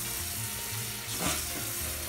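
Tap water running steadily into a sink basin, a continuous hiss of the stream hitting the drain.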